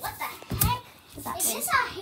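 Children's voices: high-pitched chatter that cannot be made out, in two short stretches with a brief lull between them.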